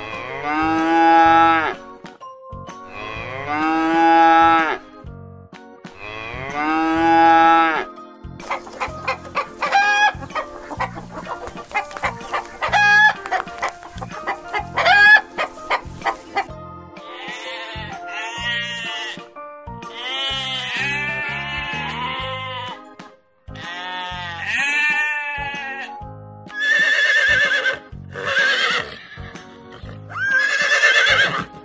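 Cow mooing three times in long drawn-out calls, followed by a rapid run of short chicken clucks and calls, then more crowing-like calls.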